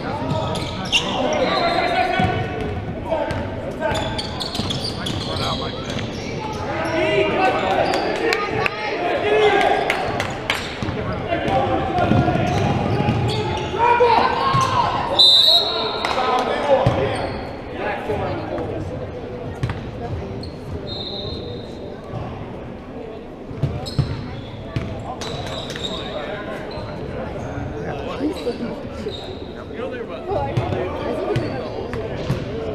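Basketball game in a gymnasium: a ball bouncing on the hardwood court among indistinct shouts from players and the bench, echoing in the large hall. A referee's whistle blows about fifteen seconds in.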